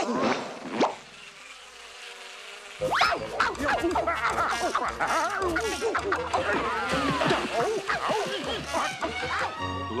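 Cartoon soundtrack: a swarm of bees buzzing around two characters, then, about three seconds in, loud, frantic chase music breaks in with sliding sound effects as they flee the swarm.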